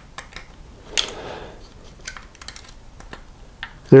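Small clicks and rustling of wire connectors being worked onto the terminals of a motorcycle taillight assembly, with a sharper click about a second in and scattered light ticks after.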